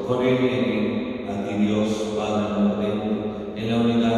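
A man's voice chanting a slow liturgical melody, each note held for about a second, with short breaks between phrases.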